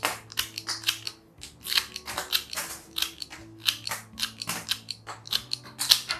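Floral shears cutting through the bunched green stems of a hand-tied sunflower bouquet, trimming them short: many sharp snips in quick succession.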